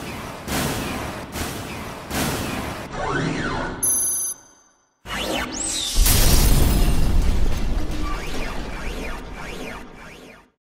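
Sound design for an animated robot logo sting: mechanical clanks and whooshes over music, with a short bright ringing tone about four seconds in. After a brief silence, a loud deep boom comes in at about six seconds and slowly fades out.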